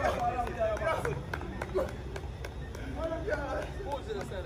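Men's voices calling out across a football pitch during play, with a few short sharp taps scattered through.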